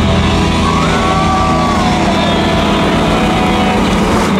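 Live rock band playing loud, with electric guitars, electric bass and drums. About a second in, a high sustained guitar note bends up and then slides back down.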